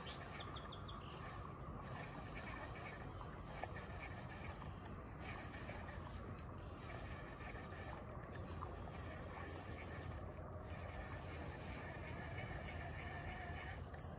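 Faint, high single bird chirps repeating every second or two over a quiet, steady outdoor background.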